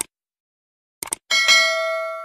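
Subscribe-button sound effect: a mouse click, a quick double click about a second later, then a bell ding of several steady tones that rings on and slowly fades.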